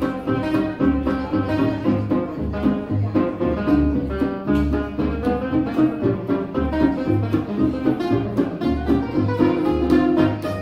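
Live gypsy jazz played on two acoustic guitars over a plucked double bass, with a steady, even beat and no singing.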